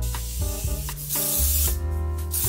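Cosmetic spray hissing from a handheld can toward the face in two bursts, a short one at the start and a longer one about a second in. Background music plays underneath.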